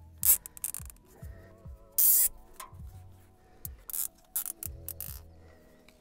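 Nylon zip ties being pulled tight around hydraulic hoses, a few short ratcheting zips, the loudest about two seconds in, over faint background music.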